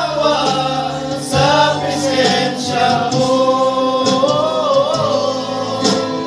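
A small group of men singing a gospel song together, with long held notes.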